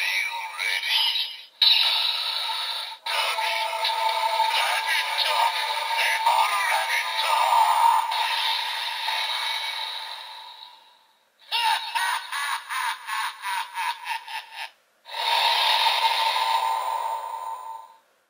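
DX Evol Driver toy belt playing its electronic transformation sequence for the Rabbit Evol Bottle: synthesized voice calls and music from its small built-in speaker. About two-thirds of the way through there is a passage of quick, even pulses. The sound cuts off shortly before the end.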